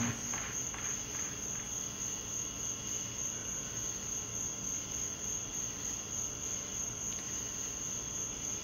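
Steady high-pitched whine over faint hiss and hum, with the song's last notes dying away in the first second or two.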